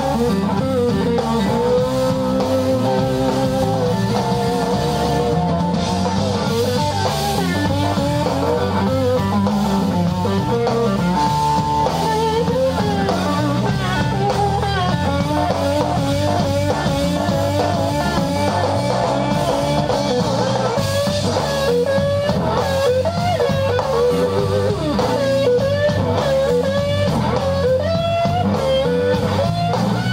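Live blues-rock trio playing an instrumental passage: electric guitar lead lines with bent, wavering notes over bass guitar and drum kit.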